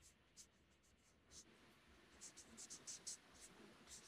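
Faint scratching of a felt-tip marker on paper as characters are written: a single stroke about a second in, then a quick run of short strokes between two and three seconds.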